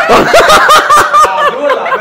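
Loud laughter from women: a rapid run of short, high-pitched laugh pulses.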